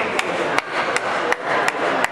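A handball bounced on the sports-hall floor while a player dribbles: sharp, evenly spaced slaps, about three a second, echoing in the hall.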